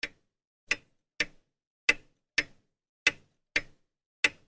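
A clock ticking: short, sharp ticks about two a second in a steady tick-tock rhythm, the gaps alternating slightly short and long.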